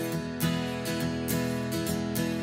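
Keyboard-played instrumental intro: a plucked, guitar-like note repeats about twice a second over sustained low notes.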